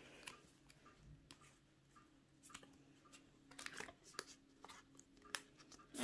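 Faint handling of Pokémon trading cards and a plastic card sleeve: scattered soft clicks and rustles as a card is slid into its sleeve and fitted into a cardboard stand.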